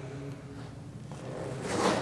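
Quiet gym room tone with a soft scuffing rustle that swells near the end as a pitcher strides down a turf-covered portable mound and throws.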